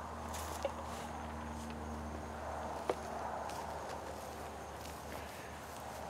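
Quiet outdoor ambience: a faint, steady low rumble with a faint hum, and two small clicks, one just under a second in and one near the middle.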